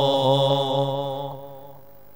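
A man's voice chanting one long held note with a wavering pitch, in the melodic style of religious recitation. It fades out about a second and a half in.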